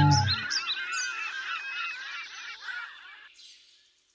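The outro music's last held notes stop just after the start, leaving a dense chorus of bird calls that fades out about three seconds later.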